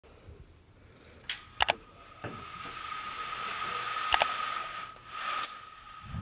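Horizontal window blinds being raised by their pull cord. The cord runs through the head rail with a steady rushing sound and a faint whine, broken by a few sharp clicks and clacks of the slats and the cord lock; the loudest come about a second and a half in and about four seconds in.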